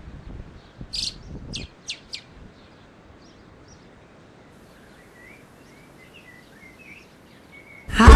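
Quiet ambience with small birds chirping: four sharp, quick chirps about a second in, then sparse softer chirps over a faint hush. A low background noise fades out in the first second and a half.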